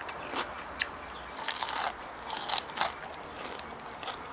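Close mouth sounds of a person biting and chewing salmon belly eaten by hand, with a few short crisp crunches in the second and third seconds.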